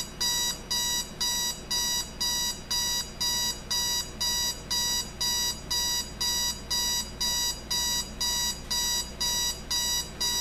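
Westclox 70014A digital alarm clock sounding its alarm: a steady run of identical high electronic beeps, about two a second.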